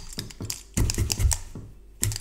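Felting needle tool stabbing repeatedly into wool on a bristle brush felting mat: a quick, uneven run of soft taps that thins out near the end.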